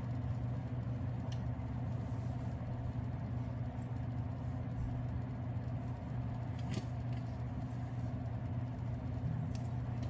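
A steady low motor hum, even throughout, with three faint ticks spread across it.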